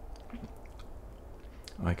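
A low, steady room hum with a few faint small clicks, then a man starts speaking near the end.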